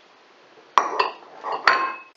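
Small glass bowls clinking against the mixing bowl as ingredients are tipped in: three sharp clinks with a short ring, two close together just under a second in and a third near the end.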